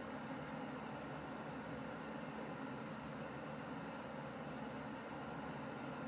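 Steady low hum and hiss of room noise, with no distinct events.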